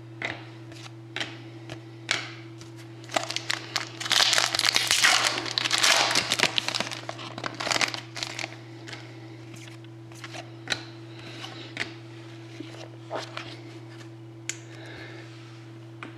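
Foil wrapper of a trading card pack crinkling and rustling, loudest for a few seconds in the middle, amid light clicks and slides of stiff cards being handled. A steady low hum runs underneath.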